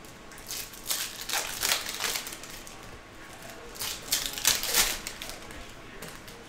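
Baseball trading cards and a foil card pack being handled, giving crinkling and rustling in two bursts: one from about half a second to two seconds in, another around four to five seconds in.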